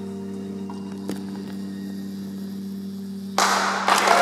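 Amplified lap steel guitar's last chord ringing out and slowly fading. About three and a half seconds in, the audience breaks into applause.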